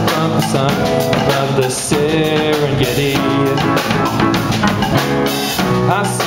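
Live rock band playing: electric guitars over a drum kit, with steady drum and cymbal hits.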